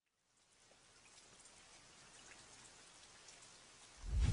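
Near silence, with a faint, even hiss fading in about half a second in.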